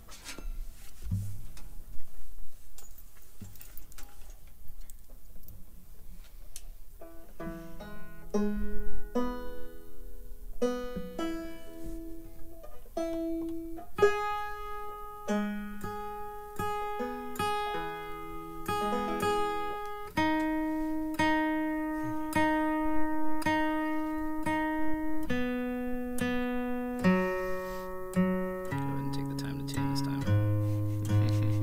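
Steel-string acoustic guitar picking an instrumental tune. It starts sparse and quiet, with single plucked notes coming in about seven seconds in, and from about halfway through the notes ring on longer as chords.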